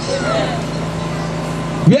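A steady low hum over background noise fills the pause, and a man's voice starts again near the end.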